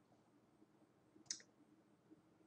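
Near silence: room tone, with a single short click a little past the middle.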